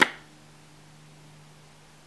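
A single sharp snap of a Monarchs playing card flipping face up at the very start, then only a faint steady low hum.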